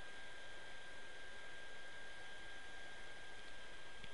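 Steady hiss of a recording's background noise, with a thin, steady high whine running through it.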